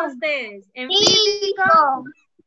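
Children's voices calling out an answer over a video call, in two drawn-out shouts.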